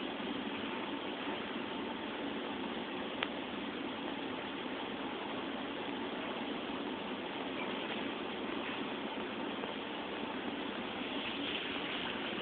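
Steady background noise, an even hiss with no clear pitch or rhythm, with one faint click about three seconds in.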